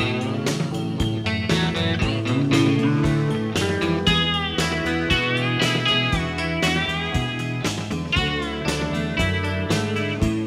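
Live country-rock band playing an instrumental break: a pedal steel guitar lead with gliding, bending notes over strummed guitar and a steady beat.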